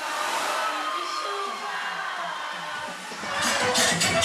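DJ dance music over a party sound system, broken down to a hissing sweep with the bass cut out and a few falling tones; the bass and beat drop back in just after three seconds.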